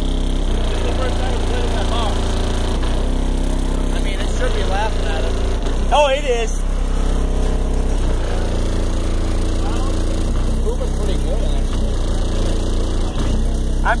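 Bass-heavy music playing loud through a car subwoofer (an HDC4 driven by an XS8K amplifier wired at 2 ohms), heard from outside the car. The bass notes step to a new pitch every second or two, with a vocal line over them.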